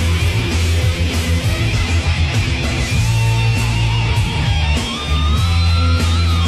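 Hard rock band playing: distorted electric guitar over a steady drum beat, with a gliding, bending guitar line near the end.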